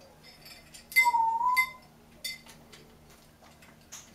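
African grey parrot giving a short whistle that dips then rises in pitch, about a second in. Around it come a few sharp metallic clinks and rings from the small bells and metal pieces of its play-stand toys.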